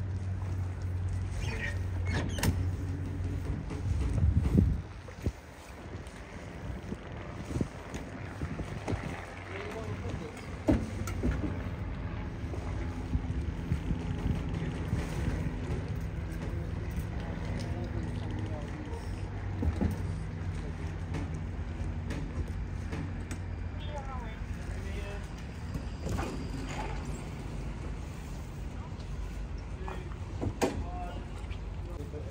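A large motor yacht's diesel engines running at idle, a steady low hum, with indistinct voices in the background.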